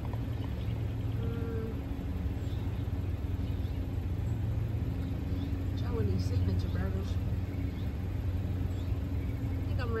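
Car engine idling with a steady low hum, heard from inside the cabin; a few faint, brief voice fragments come and go over it.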